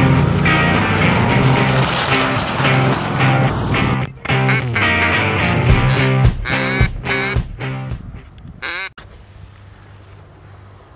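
Background music for the first four seconds, then a hand-blown duck call giving a fast run of sharp quacks that grow weaker, ending with one longer, wavering quack near the end.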